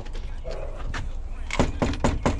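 Rapid knocking on a front door, a quick run of sharp raps starting about three quarters of the way in.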